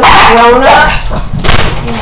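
A pet dog barking, with a loud, sharp bark about one and a half seconds in.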